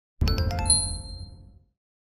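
Short animated-logo sound effect: a quick run of bright chime strikes over a low boom, ringing out and fading away within about a second and a half.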